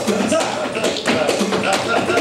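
Live flamenco soleá: a male singer's cante over flamenco guitars, with the sharp taps of the dancer's footwork and handclaps (palmas) striking throughout.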